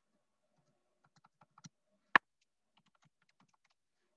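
Typing on a computer keyboard: a scatter of faint key clicks, with one much louder, sharper click a little after two seconds in.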